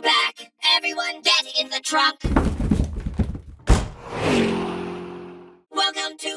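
Cartoon sound effect of a car trunk lid slamming shut with a sharp thunk a little past halfway, after a low heavy thud, followed by a fading rush of noise. Music with voice-like parts plays in the first two seconds.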